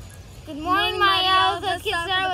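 A young girl's voice in a sing-song delivery: one long held note for about a second, then shorter notes that waver up and down, over a steady low rumble.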